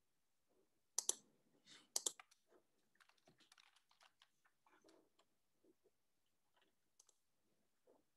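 Faint clicking at a computer: two sharp double clicks about a second apart, then a run of light tapping like typing, and one more click near the end.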